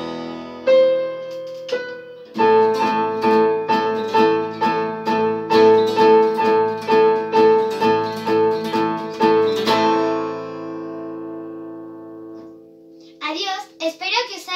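Electronic keyboard and acoustic guitar playing an instrumental duet, with a chord struck over and over at about two a second. The playing stops about ten seconds in, and the last chord rings out and fades. Voices come in near the end.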